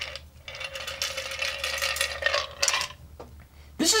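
A stirred martini poured from an ice-filled mixing glass through a strainer and a fine mesh strainer into a cocktail glass. There is a steady stream of liquid for about two seconds, with ice and metal clinking, then a few light clicks near the end.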